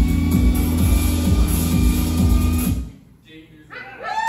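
Live electronic music from synthesizers and drum machine: a steady kick-drum beat under sustained bass and high synth tones, which cuts off abruptly about three seconds in. A voice rises in the room just before the end.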